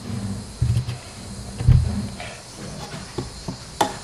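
A few dull low thumps, the loudest about a second and a half in, with faint small knocks and a short sharp click near the end.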